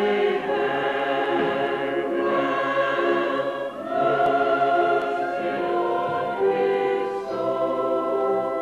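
Light-opera chorus singing in long held notes that change every second or two.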